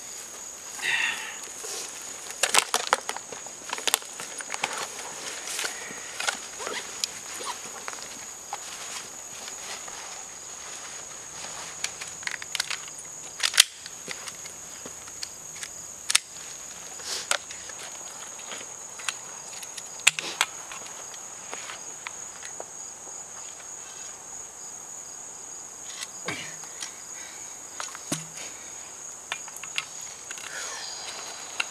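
Insects droning in one steady high-pitched tone, with scattered rustles, footsteps and sharp clicks of someone moving in grass and leaf litter.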